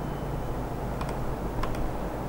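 Keystrokes on a computer keyboard: a few separate key clicks in two pairs, about a second in and again a little later, over a steady low hum.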